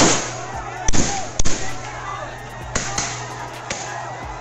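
Sharp bangs going off amid a shouting crowd, about six in four seconds, the loudest two about a second and a second and a half in.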